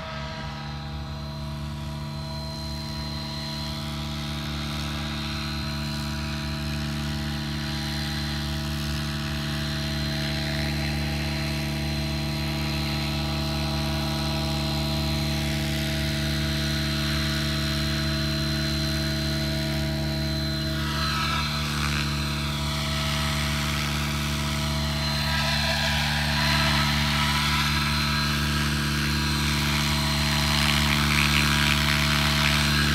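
Align T-Rex 700E electric RC helicopter hovering. Its rotors and motor give a steady hum with a high whine, growing gradually louder as it comes nearer.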